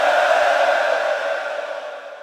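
Many mourners' voices chanting together in an echoing hall, blended into one hazy sound that fades away.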